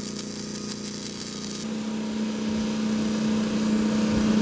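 Hobart Handler 210 MVP MIG welder running 0.030 flux-core wire on 3/16-inch steel: the arc crackles and hisses for about a second and a half while a bead is laid, then cuts off suddenly when the trigger is released. A steady low hum continues underneath.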